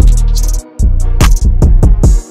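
Piano trap instrumental beat in D# minor at 145 BPM: deep 808 bass notes sliding in pitch under hi-hats and piano. The bass drops out briefly about half a second in, then comes back in quick sliding notes.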